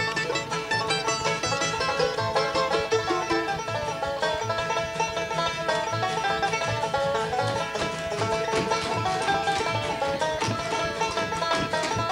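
Live bluegrass band playing an uptempo instrumental passage with no singing: banjo, fiddle, mandolin and guitar picking over an upright bass that keeps a steady beat.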